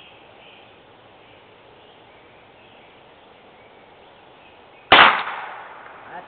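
A single gunshot from a .410/.22 over-under combination gun about five seconds in, sharp at the onset and then fading away over about a second.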